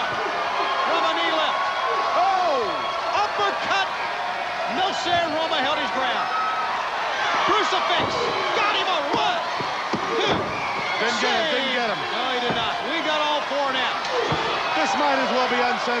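Wrestlers' bodies and feet hitting the ring mat, several sharp impacts scattered through, over a shouting, cheering arena crowd.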